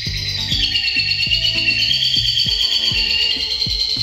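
Background music with a steady beat, over a lovebird's long, unbroken high chattering song (its "ngekek") that wavers up and down in pitch.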